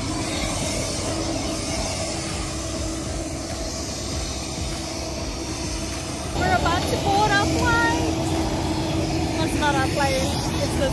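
Steady engine drone with a low hum on an airport apron. People's voices come in about six and a half seconds in.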